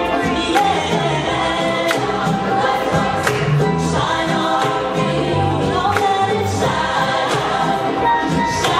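Gospel choir singing live, with a female lead vocal at the front.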